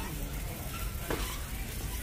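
Shopping trolley rolling across a concrete store floor, a steady rustling noise, with faint voices in the background.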